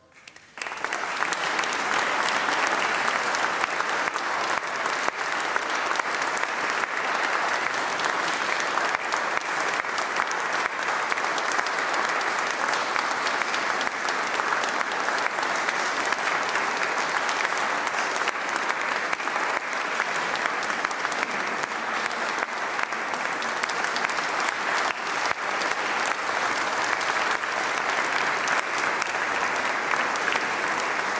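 Audience applauding, starting about half a second in and continuing steadily.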